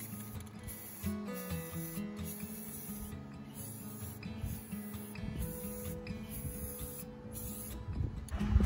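Background music with held notes, over the hiss of an aerosol can of Rust-Oleum metallic gold spray paint sprayed in several bursts with short pauses between them.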